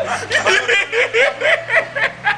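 A person laughing hard in a quick run of ha-ha pulses, about four a second.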